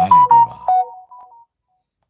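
A phone's electronic alert tune: a quick run of short beeping notes at a few different pitches, fading out about a second and a half in.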